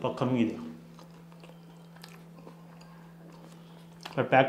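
A man's voice for a moment, then a quiet room with a steady low hum and a few faint clicks.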